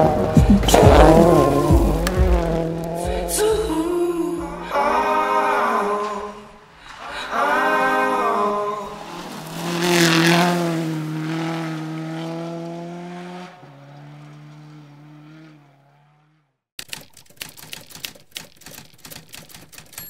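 Rally car engines revving hard in several rising surges as the cars pass on gravel, with music mixed in, fading out by about 16 s. About 17 s in, a rapid typewriter-like clicking starts as a text effect.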